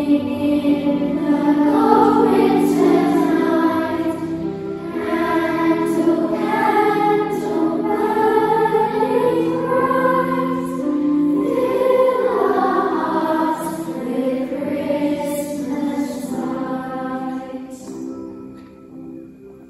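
A children's choir singing together in long held notes; the singing tails off near the end.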